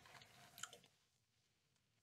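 Near silence, with a few faint soft mouth clicks in the first second from a taster working a sip of whisky for its aftertaste.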